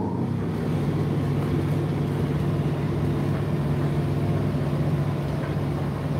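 Indesit IDC8T3 condenser tumble dryer running steadily just after being switched on at the timer dial: the drum motor and fan hum with a steady low tone.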